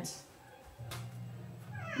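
A house cat meowing faintly in the background, in the second half of the pause.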